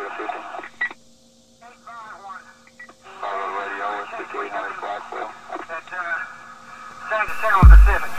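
Thin, radio-like speech with a steady hum underneath, cut off above about 4 kHz. Near the end comes a single loud, low thump.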